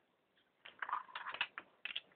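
Utility-knife blade cutting through a sheet of craft foam: a quick, uneven run of scratchy clicks and scrapes through the second half.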